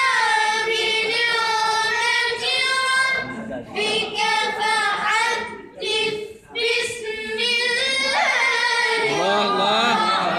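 A child's high voice reciting the Quran in a melodic, drawn-out chant, holding long wavering notes, with two short pauses for breath about four and six seconds in.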